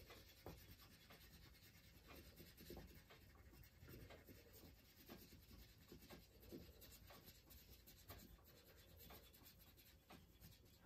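Faint scratching of a wax crayon rubbed over cardstock in many short, uneven strokes, picking up the leaf laid underneath the paper.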